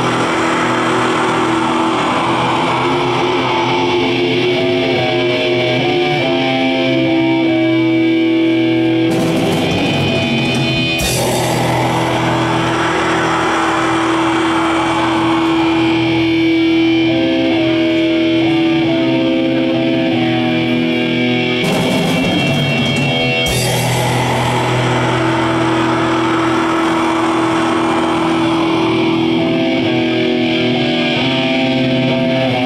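Live metal band: distorted electric guitars through effects, playing a phrase with long held notes that repeats about every twelve seconds, with a brief wash of noise between repeats.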